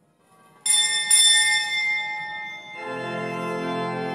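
A small church bell rings twice, about half a second apart, and rings on as it fades; this is the bell that signals the start of Mass. About three seconds in, the church organ comes in with a sustained full chord.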